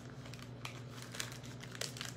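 Parchment-paper piping bag filled with buttercream crinkling as it is handled, a run of small irregular crackles, over a steady low hum.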